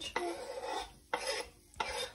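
Kitchen knife blade scraping diced tomatoes off a wooden cutting board into a glass bowl, in about three strokes with a short pause just after the middle.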